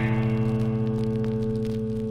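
Electric and acoustic guitars letting the song's last chord ring out, slowly fading away.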